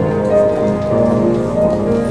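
A woman singing a solo into a microphone over keyboard accompaniment, heard through a PA system, with sustained notes.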